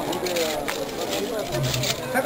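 People talking in the background, with a few short rustles and knocks as hands dig food out from the leaves and stones of a pachamanca earth oven.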